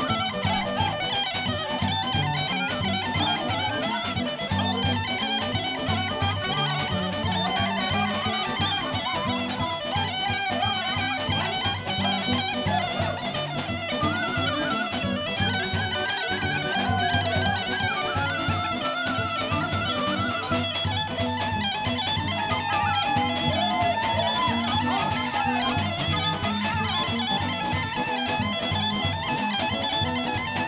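Bulgarian folk band playing a lively horo dance tune: a gaida (Bulgarian bagpipe) melody with clarinet and tambura over a steady beat on the tapan drum.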